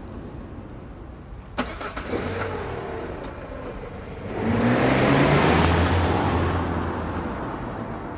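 A car door shuts with a thump, then the car pulls away, its engine rising in pitch as it accelerates and fading as it drives off.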